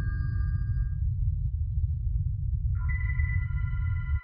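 Film score sound design: a loud, deep low drone under sustained bell-like tones that fade away about a second in. A new high, ringing tone comes in near the end.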